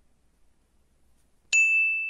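Near silence, then about one and a half seconds in a single bright, high ding like a small bell, which rings on and fades slowly.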